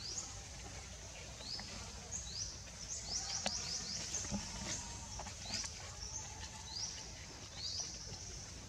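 A bird calling in short, high, rising chirps, repeated in quick runs of three or four, over a steady low background rumble.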